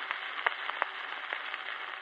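Surface noise of a Telefunken 78 rpm shellac record under the stylus once the music has ended: a steady hiss with scattered clicks and crackles.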